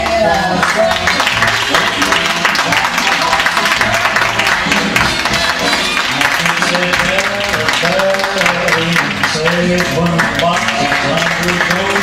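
Ballroom dance music playing for a standard-dance competition round, with a melody line running over a continuous accompaniment.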